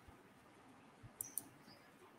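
Near silence: faint room tone, with two short, faint high clicks a little past the middle.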